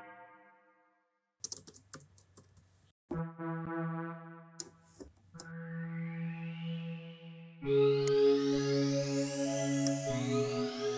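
Arturia Analog Lab software synthesizer presets. A held synth note fades out, then a run of mouse clicks as a new preset is chosen. Sustained synth chords come in about three seconds in and get louder near the end, with repeated rising sweeps in the tone.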